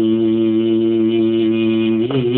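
A man singing a romantic ballad, holding one long, steady note over the music.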